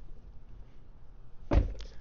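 Door of a 2024 Corvette E-Ray swung shut once, about one and a half seconds in: a single low thunk with a short tail as it latches.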